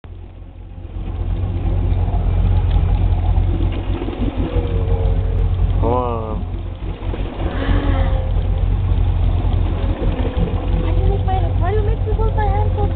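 A fishing boat's engine running steadily at trolling speed, a loud low rumble that builds up over the first couple of seconds.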